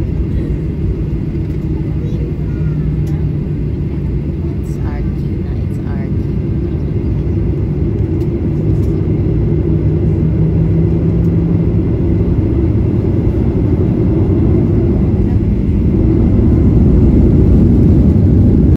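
Jet airliner cabin noise while taxiing: the engines and airflow make a steady low rumble that grows gradually louder, with a low hum that comes and goes.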